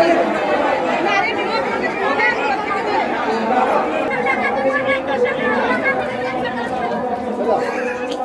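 A crowd of worshippers talking all at once: a steady hubbub of many overlapping voices.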